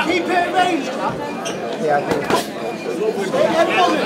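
Spectators and corner-men shouting and chattering in a hall during an amateur boxing bout, with a couple of sharp knocks about one and two seconds in.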